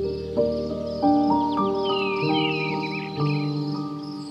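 Soft, slow piano music with held notes, layered over a nature-sound bed: a bird gives a run of quick falling chirps in the middle, over a steady high trill in the background.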